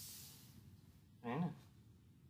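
A man's voice saying one short syllable about a second in, after a soft breathy hiss at the start; otherwise faint room tone.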